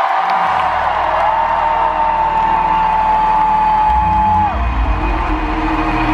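Live concert music with one long held high note over a screaming, whooping crowd; heavy bass comes in about four seconds in.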